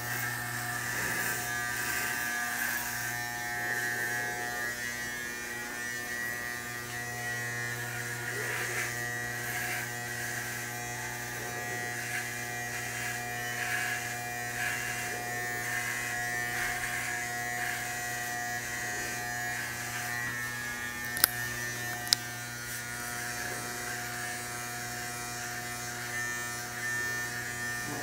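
Electric hair clippers running with a steady, unbroken buzz as they shave a head down to bald. Two sharp clicks come about a second apart roughly two-thirds of the way through.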